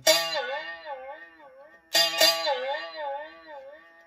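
Single-string canjo, a guitar string over a can, plucked twice about two seconds apart; each note rings and fades while its pitch wavers up and down as the can is squeezed, bending the note like a whammy bar.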